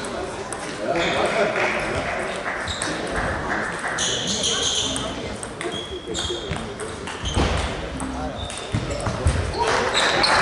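Table tennis balls clicking off bats and tables during rallies at several tables, echoing in a large hall, over a murmur of voices.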